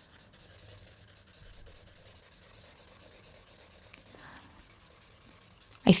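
Green felt-tip marker scratching over paper in repeated back-and-forth colouring strokes, faint and steady.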